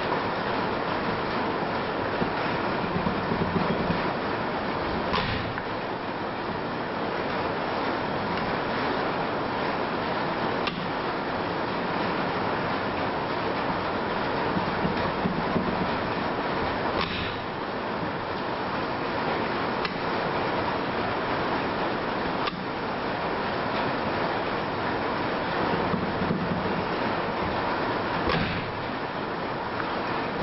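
Steady hiss of rain on the shop roof. About half a dozen sharp clicks, a few seconds apart, come from the magneto's impulse coupling snapping over as it is turned slowly by hand.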